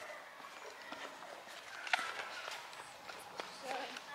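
Footsteps walking on stone paving, soft scuffs with a few sharper taps.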